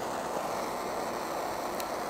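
Torch flame hissing steadily as it heats a dab rig's banger.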